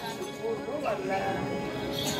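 Several voices talking over one another, at a lower level, just after the drum-and-cymbal accompaniment breaks off at the very start.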